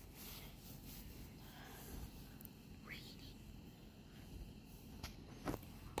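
Quiet outdoor background noise, a faint steady low rumble, with a brief faint rising sound about halfway through and a soft click shortly before the end.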